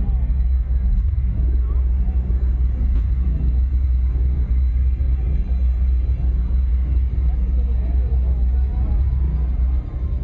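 Concert sound picked up by a phone in the crowd: a loud, steady, overloaded low rumble from the sound system, with crowd voices faintly over it.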